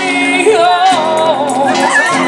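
Live flamenco-style song: a solo voice sings a wavering, ornamented melody over a strummed Spanish acoustic guitar, with hand-clapping (palmas) marking the beat.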